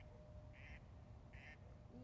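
A bird calling faintly twice, two short calls about a second apart, in near silence.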